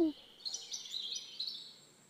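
Small birds chirping: a rapid, high twittering that begins about half a second in and fades after about a second.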